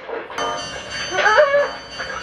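A woman whimpering in fright, short high wavering cries, over steady high held tones that come in suddenly a moment in.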